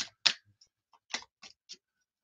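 A few short, light clicks: a sharp one just after the start, then three fainter ones a little after a second in, a few tenths of a second apart.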